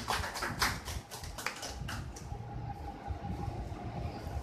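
A handful of irregular sharp clicks in the first second and a half, then a quieter room with a faint steady hum.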